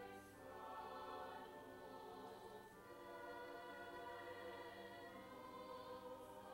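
Mixed choir of women's and men's voices singing slow, held chords, each chord changing to the next after about two and a half seconds.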